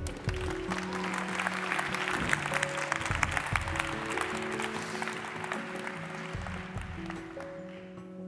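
An audience applauds over walk-on music with long held notes. The clapping is fullest in the first few seconds and dies away toward the end while the music carries on.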